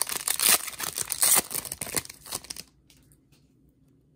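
Foil wrapper of a Panini Chronicles football card pack being torn open by hand: rapid tearing and crinkling that stops about two and a half seconds in.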